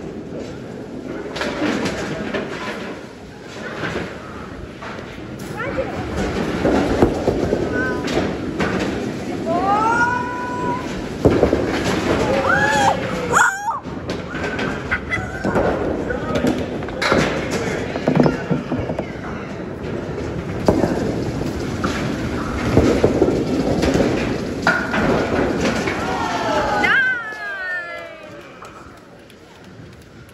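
Busy bowling-alley din: voices and children's high calls over balls rolling down the lanes and the knocks of balls and pins.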